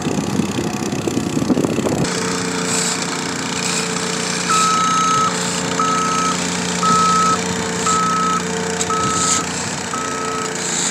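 Gas plate compactor's small engine running steadily, with a paving machine's backup alarm beeping about once a second from about four and a half seconds in, the first beep longer than the rest. The first two seconds are a rougher low rumble.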